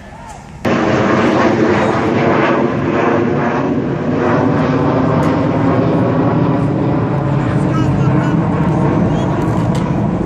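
Loud, steady wind rumble on the microphone that cuts in suddenly about half a second in, with voices faintly behind it.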